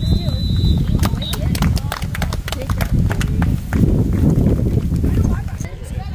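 A referee's whistle blown at the end of a youth football play: one steady high blast of under a second, then a brief second toot. Scattered hand claps from the sideline follow for a couple of seconds.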